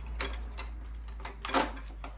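Sockets and a socket rail being handled over an Ernst Socket Boss tray: a string of sharp clicks and clatters as the rail is worked back into the tray, the loudest about one and a half seconds in.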